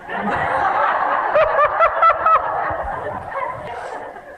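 Audience laughing together, a full burst at first that fades away toward the end.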